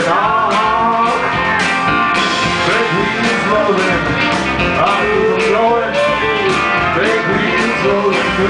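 Live country band playing an instrumental break, with drums, electric bass and a lead line that bends in pitch.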